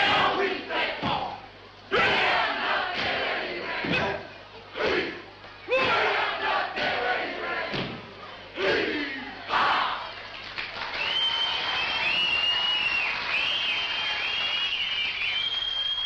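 A group performing a Māori haka, shouting the chant together in sharp, loud bursts for about the first ten seconds. After that the shouting gives way to a more even crowd noise with a high wavering tone over it.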